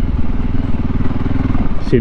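VOGE 300 Rally's single-cylinder engine running steadily under way, with an even, rapid firing pulse.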